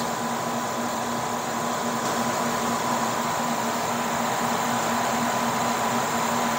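Steady machinery and fan noise in an industrial equipment room, with a constant low electrical hum and a fainter steady whine above it.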